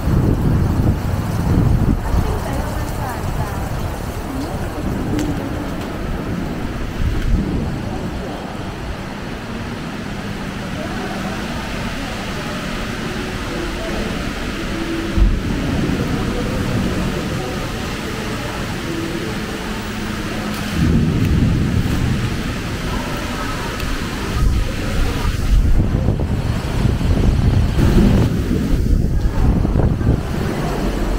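Walking city ambience: steady low rumble of wind on the microphone and road traffic, dipping to a quieter indoor hall murmur with indistinct voices in the middle, and growing louder again in the last third.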